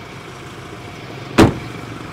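A pickup's rear door shut once: a single short, sharp thump about one and a half seconds in, over steady background noise.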